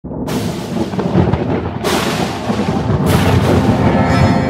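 Thunder sound effect in a dramatic intro: three sudden cracks, near the start, just before two seconds in and about three seconds in, each rolling into a heavy, continuous low rumble, with music.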